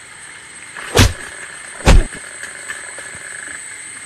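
Two loud, sudden hits about a second apart, over a steady hiss with a thin high whine.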